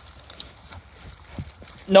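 Faint footsteps and rustling through long grass, with a few soft, irregular ticks.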